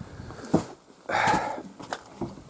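Handling noise in a log hut as a wooden door is reached for: a sharp knock about half a second in, a short rasping noise about a second in, and another click near the end.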